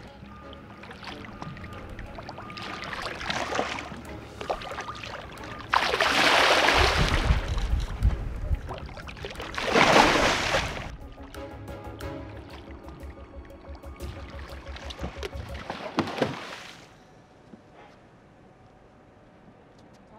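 Background music over a hooked shark thrashing and splashing at the water's surface, with loud bursts of splashing about six and ten seconds in, then a quieter stretch near the end.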